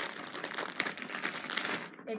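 Crinkling and rustling of crinkly material being handled close by: a rapid, uneven run of small crackles and ticks.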